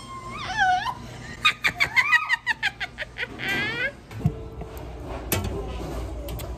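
A woman laughing and squealing in high-pitched bursts, with a quick run of short laughs about a second and a half in. From about four seconds in, a steady low machine hum takes over.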